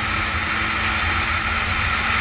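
Motorcycle riding at steady speed: wind rushing over the onboard camera's microphone, with a steady engine hum underneath.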